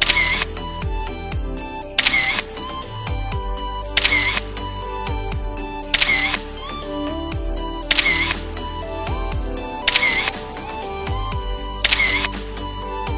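Background music with a steady beat, overlaid with a camera-shutter click effect that comes every two seconds as each photo appears.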